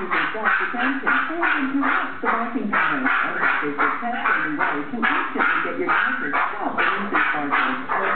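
Small dog barking rapidly and without pause, about three sharp barks a second, in a frenzy set off by a Bark Off anti-barking advertisement on the TV.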